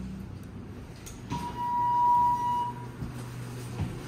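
A Thyssenkrupp Synergy traction elevator sounds its electronic signal: a single steady high beep of about a second and a half. Under it runs the low, steady hum of the cab fan.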